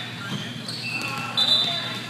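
Players' voices echoing in a large sports hall, with a few short high-pitched squeaks of sneakers on the court floor about a second in.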